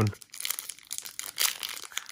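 Plastic-foil trading-card pack wrapper being torn open and crinkled by hand: an irregular run of crackles and rips.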